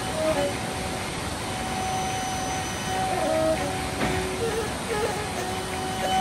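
Steady rushing of a muddy, rain-swollen river in flood.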